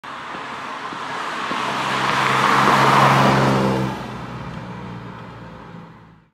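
A Nissan 350Z's V6 driving past: engine note and tyre noise swell as it approaches, peak about three seconds in, then fade away as it recedes.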